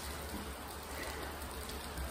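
Heavy rain falling, a steady even hiss.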